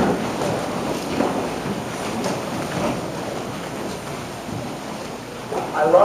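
A large congregation sitting down in wooden church pews: a steady, even rustle and shuffle of many people settling in their seats.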